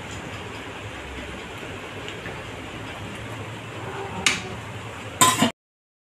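Sugar syrup with watermelon-rind pieces simmering in an aluminium kadai on a gas burner: a steady low hiss and bubbling. There are two sharp knocks near the end, and then the sound cuts off abruptly.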